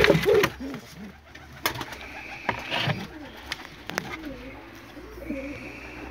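Domestic pigeons cooing in a loft: a run of wavering, rising-and-falling coos in the second half, with a few sharp clicks in the first half.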